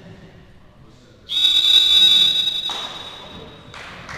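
An electronic buzzer sounding once, a loud steady high tone for about a second and a half that then fades through the hall's echo. A short sharp knock near the end.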